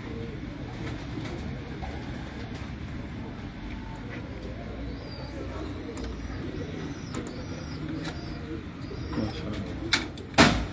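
Domestic pigeons cooing steadily.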